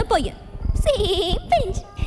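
Film dialogue: a high-pitched voice speaking, with one drawn-out, quavering vowel about a second in.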